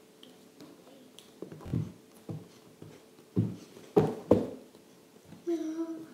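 Hands and feet thumping and slapping on a hardwood floor during a gymnastics floor move: about five impacts, the two loudest close together about four seconds in. Near the end comes a short vocal sound from the girl.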